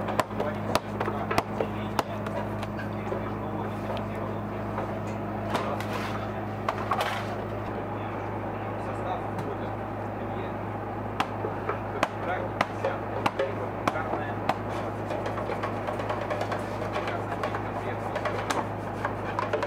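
Dough being handled by hand: irregular slaps and knocks as it is worked on a metal table and set on a scale, over a steady low hum and indistinct background voices.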